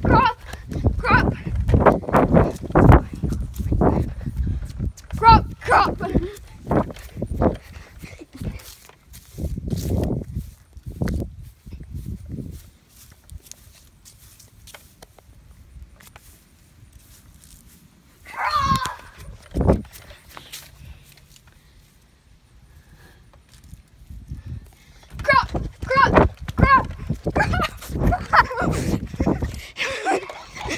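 Bumps and knocks of a handheld phone being jostled as its holder runs about on grass, with short bursts of kids' voices shouting now and then. The knocking is busiest in the first half and quiets down in the middle.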